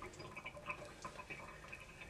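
Faint, irregular ticking and fizzing of hydrogen bubbling off an aluminum can tab as it reacts with sodium hydroxide (drain cleaner) in a soaked cloth.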